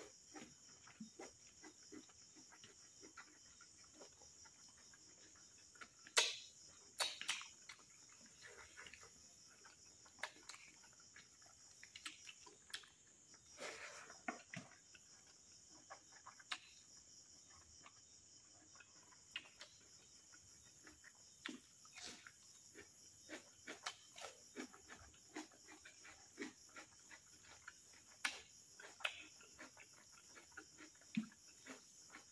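Close-miked eating by hand: scattered wet smacks, clicks and chewing as fingers work rice and meat curry, with the sharpest clicks about six and seven seconds in. Behind it runs a steady high chirring of crickets.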